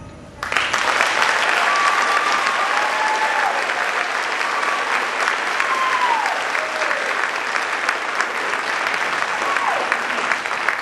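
Audience applauding, breaking out about half a second in and holding steady, with a few calls above the clapping that slide down in pitch.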